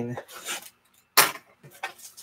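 Shrink-wrapped trading-card box handled and its plastic wrap worked open: brief crackles and rustles, with a sharp tap a little over a second in as the loudest sound.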